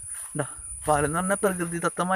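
A steady high-pitched insect trill, cricket-like, running unbroken, with a person's voice over it from about half a second in.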